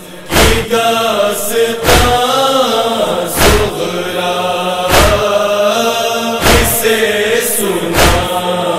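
Voices chanting a nauha, a Shia Muharram lament, in a long, wavering melodic line, kept in time by rhythmic chest-beating (matam): a heavy thud about every one and a half seconds.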